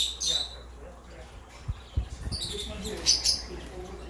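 Caged small parrots, cockatiels and ringneck parakeets, chirping in short high calls: a few right at the start and another cluster about three seconds in. A couple of low thumps come about two seconds in.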